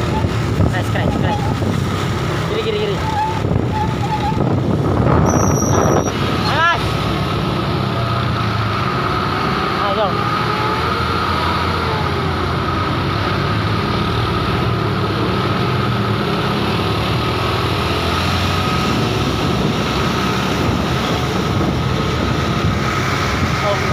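Steady road and traffic noise from trucks and other vehicles moving along a road, with a short high beep about five seconds in.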